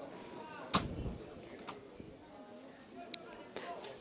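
A single sharp thud of a football being kicked, under a second in, over faint distant shouts from players on the pitch.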